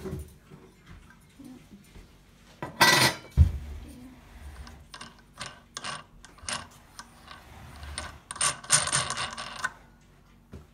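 Metal lantern parts being handled: a loud scrape about three seconds in with a thump just after, then a run of small clicks and rattles that grows quicker near the end.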